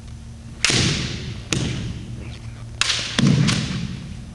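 Kendo exchange: sharp cracks of bamboo shinai strikes and stamping feet on a wooden gym floor. There are about five in all: one just under a second in, one at about a second and a half, and a cluster of three near the end. Each is followed by a shouted kiai or hall echo.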